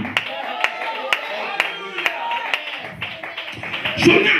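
Rhythmic hand-clapping, about two claps a second, over quieter voices and music.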